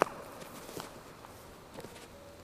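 A sharp knock at the very start, followed by two fainter clicks or taps about a second apart.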